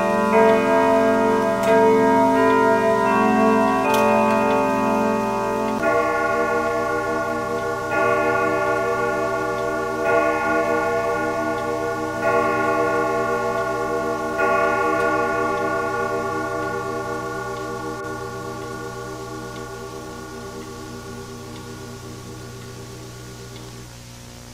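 Clock chimes: a run of bell-like strikes about every two seconds, each ringing on into the next. The ringing slowly fades away over the last several seconds.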